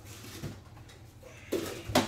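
A brief knock or clatter about a second and a half in, ending in a sharp click near the end, over faint room tone.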